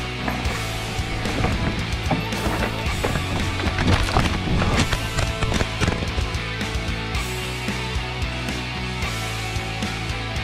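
Rock background music with a steady beat. About three to five seconds in, a cluster of knocks and clatter sounds as a mountain bike crashes on the rocky trail.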